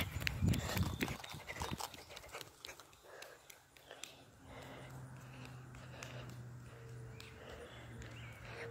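Running footsteps on asphalt with knocks from the hand-held phone, dying away after about two seconds. Then a faint steady low hum.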